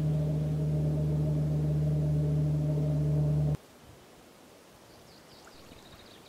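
A loud, steady low droning tone with several overtones, held without change and cutting off suddenly about three and a half seconds in. After it there is only faint outdoor background with a few faint high chirps.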